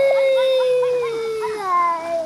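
A child's long drawn-out shout, one held note sliding slowly down in pitch, with other children's shorter calls overlapping it.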